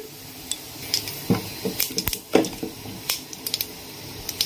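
A handful of sharp, scattered clicks and light metallic clinks in a steel pressure cooker holding mustard seeds in hot oil, as asafoetida is added to the tempering, with a faint sizzle underneath.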